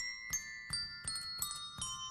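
A set of colour-coded push-button handbells struck one after another in a descending scale, about three notes a second, each note ringing on as the next sounds.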